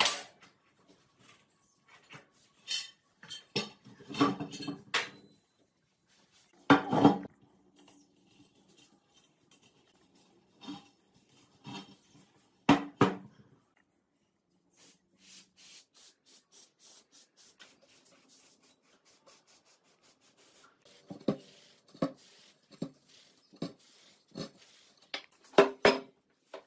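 Metal clanks and knocks as a rusty steel spoked Minsk 125 motorcycle wheel rim and its tyre levers are handled and the tyre is worked off on a wooden workbench, some hits leaving a short ring from the rim. In the middle comes a stretch of an aerosol can spraying onto the rim.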